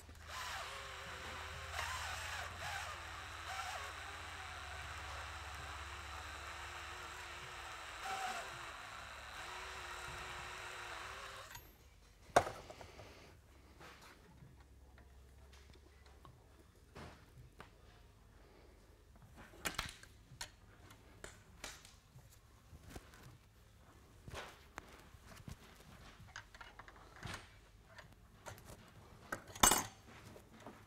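A DeWalt 20V MAX XR cordless drill spins a Uniburr chamfering bit against the end of a steel threaded rod, a steady grinding whine for about eleven seconds that stops abruptly. Then comes a sharp clack, followed by light metallic clicks and ticks as a nut is threaded onto the chamfered rod end by hand.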